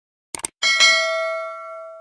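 A quick mouse-click sound, then a notification bell ding that rings and fades away over about a second and a half: the stock sound effect of a YouTube subscribe-button and bell-icon animation.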